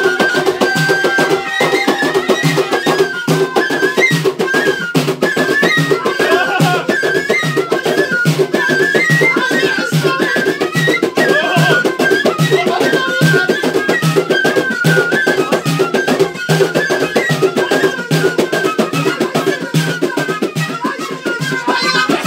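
Traditional Moroccan music: a large frame drum beaten in a steady rhythm, about two strokes a second, under a high, wavering melody played on a short wind pipe.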